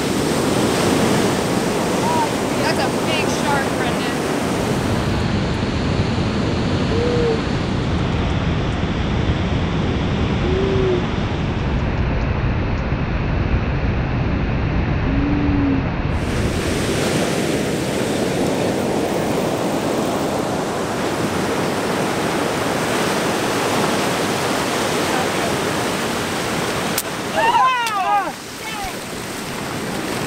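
Ocean surf breaking and washing up the beach, a steady rushing of waves with some wind on the microphone. Near the end a brief loud voice cuts through.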